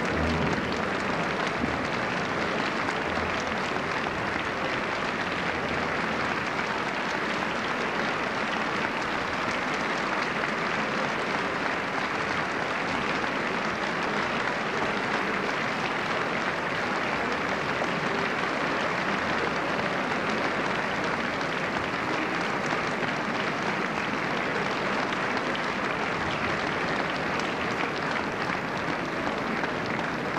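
Large theatre audience applauding steadily, a dense, even clapping that holds at one level throughout.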